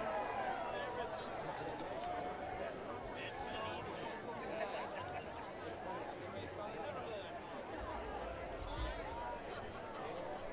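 Outdoor audience chatter: many voices talking at once, with no music playing. A brief low rumble comes near the end.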